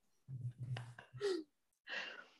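Soft, breathy laughter in a few short bursts, one trailing off in a falling, sigh-like exhale.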